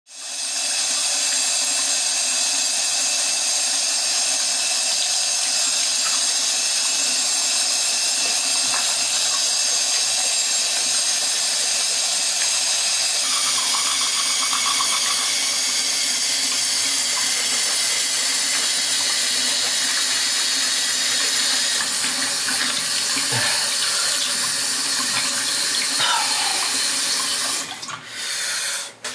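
Bathroom tap running steadily into a sink. It fades in at the start and cuts off suddenly just before the end.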